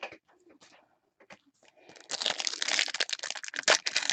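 Foil wrapper of a Bowman Chrome trading-card pack crinkling in the hands, a few faint clicks at first, then dense loud crackling from about halfway through.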